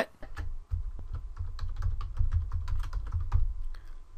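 Typing on a computer keyboard: a quick run of key clicks over a low rumble, stopping about three and a half seconds in.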